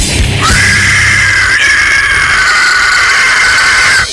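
Heavy metal recording in which the drums drop back and a long, high-pitched squeal is held for about three and a half seconds, sliding slightly lower and gaining a harsher upper layer partway through, then breaking off.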